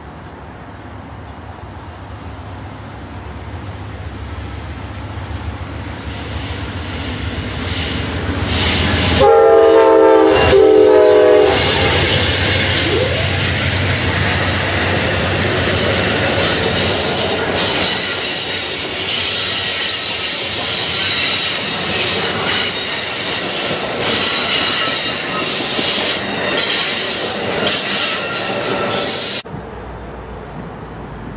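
Amtrak passenger train with bilevel Superliner cars approaching and passing close by. Its rumble builds for several seconds, then the locomotive horn sounds for about two seconds around nine seconds in. The cars roll past with high-pitched wheel squeal and repeated clicks of wheels over the rail joints, and the sound cuts off suddenly near the end.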